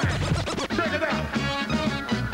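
Live hip hop music: turntable scratching over a repeating bass-heavy beat.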